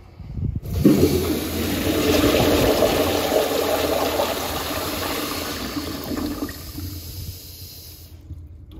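1930s Standard Monaco vented side-spud toilet flushing hard: a few brief knocks, then a sudden rush of water about a second in, loudest over the next few seconds and slowly dying down.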